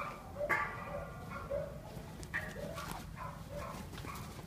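A dog playing with another dog, giving several short pitched yips and barks.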